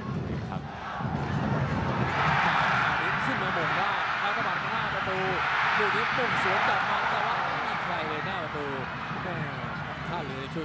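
Stadium crowd noise swelling about a second in and holding loud for several seconds before easing, as an attack comes into the goalmouth, with a man's commentary over it.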